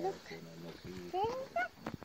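A man's voice talking in short phrases, rising sharply in pitch once about a second in.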